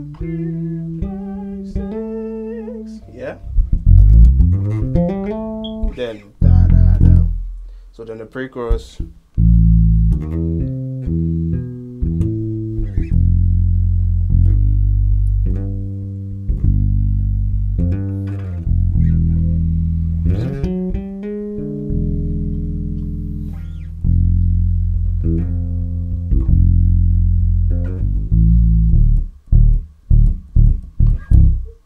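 Electric bass guitar playing a slow bassline of long, sustained low notes. Several notes are reached by sliding up or down into them.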